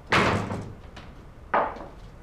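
A wooden door being shut firmly: a sharp slam just after the start that rings briefly, then a second, softer thump about a second and a half later.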